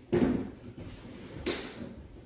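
Two knocks or bumps in a room: a loud one just after the start and a softer one about a second and a half in.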